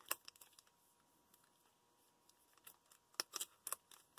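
Faint handling of sealed foil trading-card packs: a few soft clicks and crinkles as the packs are squeezed between the fingers, with a small cluster of them about three seconds in.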